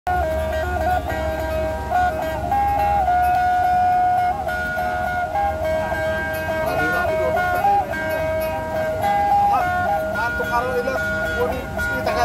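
Two sundatang, Sabah plucked boat lutes, played together: a repeating tune of held notes stepping between a few pitches.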